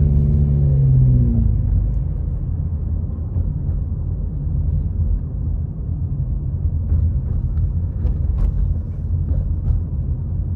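A car driving: a steady low rumble of engine and tyres on the road, with a steady engine hum that fades away about a second and a half in.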